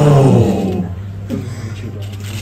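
A man's drawn-out "ohhh" of reaction, falling in pitch and ending about half a second in; after it, a low steady room hum with a few faint murmurs.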